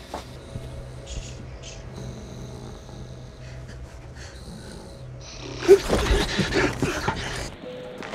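Steady low drone of a private jet's cabin in flight, then about six seconds in a man snoring in his sleep, a rough, loud snore lasting a second or two.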